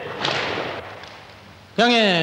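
Taekwondo class in a gym: a short noisy burst about a quarter-second in, then near the end a man's loud, drawn-out shouted command that falls in pitch.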